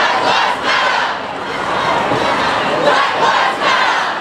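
A large crowd of protest marchers shouting together, many voices at once in swelling waves.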